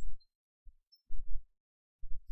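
A pause that is mostly silent, with two short, low thuds a little past a second in.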